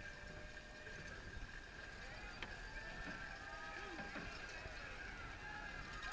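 Faint, indistinct voices in the distance over steady outdoor background noise.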